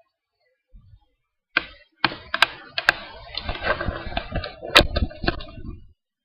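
Laptop being handled and moved, picked up by its own built-in microphone: a sharp knock, then a dense run of clicks, knocks and rubbing with a few louder cracks, which cuts off abruptly just before the end.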